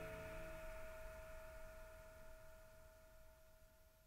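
The last chord of a guitar-accompanied song ringing out and dying away. One note rings on longest and fades to near silence by the end.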